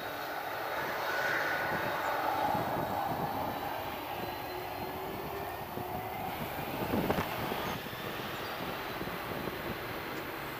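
Boeing 767-200 jet engines running at high thrust as the airliner begins its takeoff roll and pulls away: a steady jet rumble with a faint whine, strongest in the first few seconds. A brief thump about seven seconds in.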